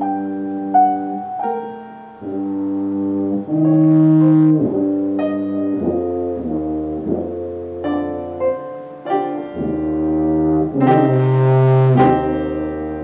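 Tuba playing a slow melody of held notes, with piano accompaniment.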